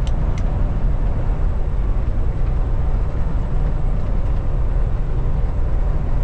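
Steady low rumble inside the cab of a Kenworth T680 semi truck cruising at about 70 mph: engine drone mixed with tyre and wind noise, with no change in pace.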